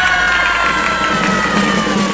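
Audience cheering over a single long held note in the music that slowly falls in pitch, with no beat underneath.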